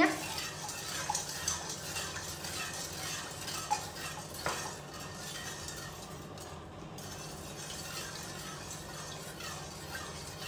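A long-handled spoon stirring liquid tea round a large stainless steel stockpot, a steady swishing with occasional light clinks of the spoon against the pot, as the sugar is dissolved.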